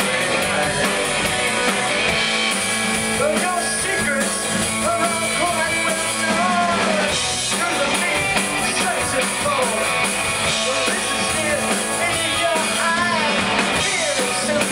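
Live rock and roll band playing: electric guitars and a drum kit, with a lead vocal sung over them.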